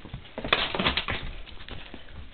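Dog sniffing up close to the microphone: a quick run of short sniffs starting about half a second in and lasting under a second, with a few fainter snuffles after.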